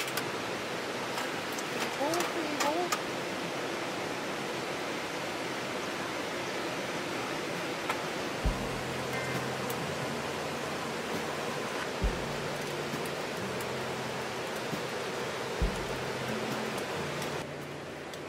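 Steady rushing of a mountain stream, with a few metal clicks and clatters from a folding steel fire pit being set up in the first three seconds. From about eight seconds in, slow background music joins, with a low held bass and a soft beat about every three and a half seconds.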